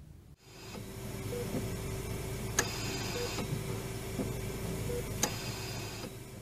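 Intensive-care room equipment sounds: a steady hum with a short, soft beep about every two seconds. Twice, a click is followed by a brief hiss of air.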